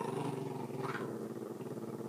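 Small dog growling without a break, a steady low rough growl. It is a warning growl at a person reaching toward her, the kind that comes before a snap or bite.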